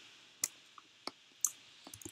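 Near-silent room tone with a few faint, sharp clicks: the clearest about half a second in, others about one second and one and a half seconds in.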